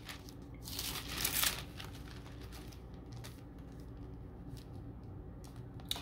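Paper Bible pages rustling as they are turned to a passage, loudest about a second in, followed by a few faint ticks.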